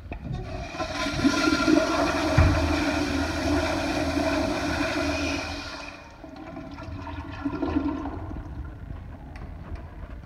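Commercial flushometer toilet flushing: water rushes loudly through the bowl for about six seconds, with a thump about two and a half seconds in. The rush then cuts off to a quieter flow of water that keeps on to the end.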